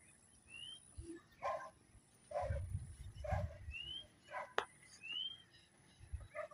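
Several short dog barks, faint and spaced about a second apart, with a few short rising bird chirps between them.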